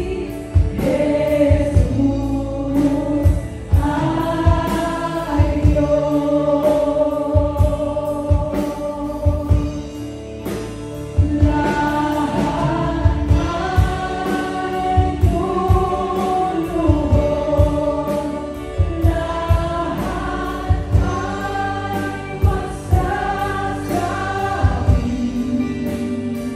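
Live Christian worship music: voices singing together over strummed acoustic guitars and a steady drum beat.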